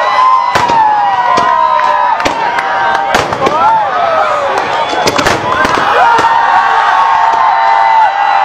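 Aerial fireworks going off in a display: sharp bangs of shells bursting, irregularly about once or twice a second. Long whistling tones slide down or hold steady throughout, mixed with crowd voices.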